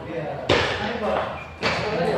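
Two sharp clicks of a table tennis ball striking a paddle or the table, about a second apart, each with a short echo.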